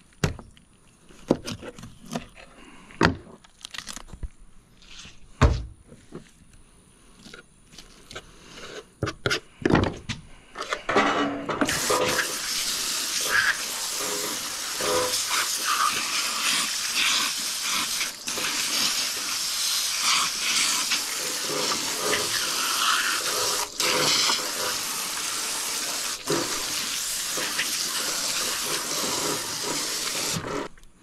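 A knife cutting a flounder's head off on a cleaning table, with scattered sharp knocks and crunches. About twelve seconds in, a garden-hose spray nozzle starts up, rinsing the fish and table with a loud, steady hiss of water.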